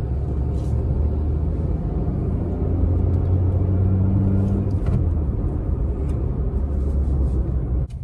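Maruti Suzuki Baleno's petrol engine and road noise heard inside the cabin while driving, a steady low drone. The engine note grows stronger in the middle, eases about five seconds in, then steadies again. This is the engine noise the reviewer finds a little more than he expected for the car.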